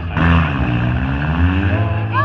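Demolition derby car engines running and revving, their pitch sliding up and down, with a brief noisy burst right at the start.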